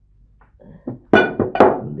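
Near quiet for about a second, then a woman's voice in a short sing-song phrase with no clear words.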